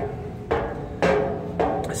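Footsteps climbing an open metal staircase, about two a second, three in all. Each step lands as a knock with a short ringing tone from the treads.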